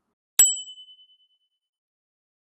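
A single bright ding sound effect for the end card, with a short high tone and a lower one ringing out for about a second, in otherwise total silence.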